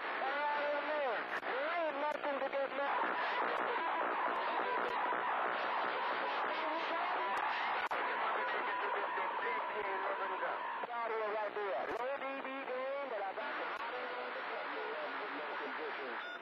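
CB radio receiving another station's transmission: narrow-band, garbled voices from the radio's speaker. A steady whistle tone runs through the middle of it.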